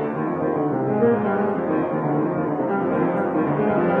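Solo piano playing classical music, a steady flow of notes.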